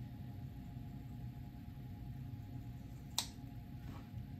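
Quiet room tone with a faint steady hum, broken by a single short, sharp click about three seconds in.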